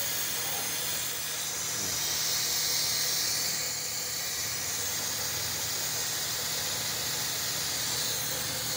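Compressed-air venturi vacuum tool of a coolant vacuum-fill kit hissing steadily as it pulls a vacuum on the engine's cooling system, swelling slightly for a second or two in the middle.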